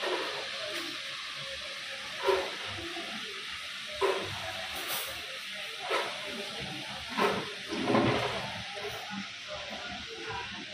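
Ambience of an open-air restaurant deck: a steady hiss with a handful of brief louder sounds every second or two, and music in the background.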